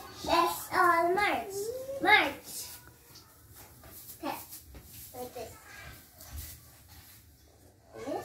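A young girl's high voice calling out in a few drawn-out, sing-song phrases over the first two seconds. After that it falls quiet, with only a few faint voice fragments and soft low bumps.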